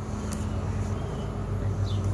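A low steady hum with a faint background hiss.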